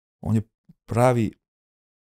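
A man's voice: two short spoken syllables, one just after the start and one about a second in, then silence.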